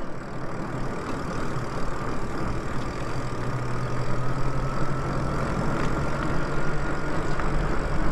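Lyric Graffiti electric bike riding along, its motor giving a low hum and a faint whine that climbs slowly in pitch as the bike gathers speed, under a steady rush of wind and tyre noise. The whine stops shortly before the end.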